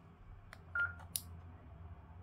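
Short single beep from a handheld two-way radio, with a click just before it and another just after, as its power knob and buttons are worked.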